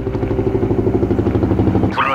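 Helicopter overhead: its rotor chops in a loud, fast, even beat of about ten pulses a second over a low engine drone.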